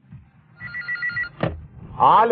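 Telephone ringing: one short burst of a rapid electronic trill starting about half a second in, followed by a sharp click a little after.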